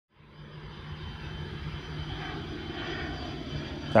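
Airplane flying overhead, a steady engine drone that grows louder over the first second and then holds.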